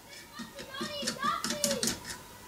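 A child's voice talking in a high, lilting pitch from about half a second in.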